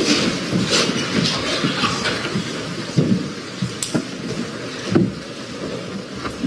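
Courtroom movement noise as people stand and the jury files out: shuffling feet, rustling and chair sounds, with a few sharp knocks about three, four and five seconds in.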